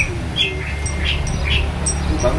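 Four short, high bird chirps spread across two seconds, over a steady low background rumble.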